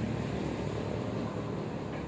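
Steady low rumble with a faint hiss above it, no distinct events.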